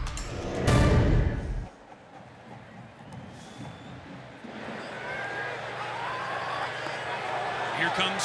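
A short, loud, bass-heavy music sting from a TV broadcast graphic that cuts off under two seconds in. Then the noise of a football stadium crowd swells steadily, with cheering and whistling as the kickoff nears.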